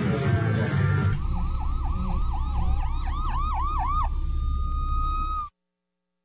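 A siren yelping in quick rising-and-falling sweeps, about four a second, over a low rumble. It comes in after a second of music, settles into one steady tone about four seconds in, and cuts off abruptly shortly after.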